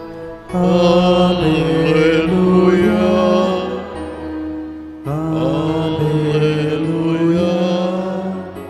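Slow hymn singing with long held notes, in two phrases: one beginning about half a second in, the next about five seconds in.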